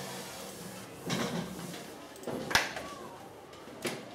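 Eraser rubbing across a whiteboard in a short burst of strokes. A sharp knock comes just past halfway and a smaller click near the end.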